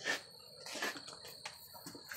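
Quiet handling noise: a few faint clicks and rustles, the strongest right at the start, over a faint steady high-pitched whine.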